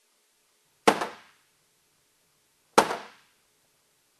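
A hammer striking a molded polyethylene rack-case lid twice, about two seconds apart. Each blow is a sharp crack that dies away within half a second. The lid takes the hits without cracking.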